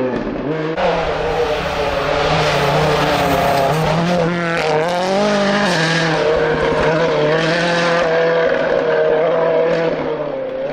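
Ford Fiesta rally car engine running hard at high revs on a snowy gravel stage, with tyre and gravel hiss. Its note dips and wavers about halfway through, then holds steady and high as the car comes through.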